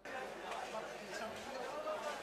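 Indistinct voices and crowd chatter in a large hall, cutting in abruptly out of near silence.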